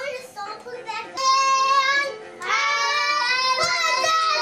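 A young child singing loud, high notes: a few short sung bits, then two long held notes in the second half.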